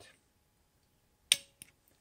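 A single sharp click from the Breckwell P-24 pellet stove controller board a little over a second in, followed by two faint ticks, as the auger button is pressed and the igniter output switches off. Otherwise near silence.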